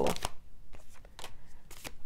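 Oracle card deck shuffled by hand, an irregular run of soft card flicks and slaps.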